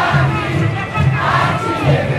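A large crowd of samba school members singing the samba-enredo loudly together as they march, over a deep drum beat about twice a second from the samba drum section.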